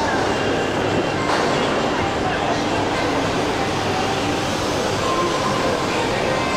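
Steady mechanical hum and rumble of a shopping-mall interior, with the running escalators and building ventilation, echoing in a large tiled atrium, with faint indistinct voices underneath.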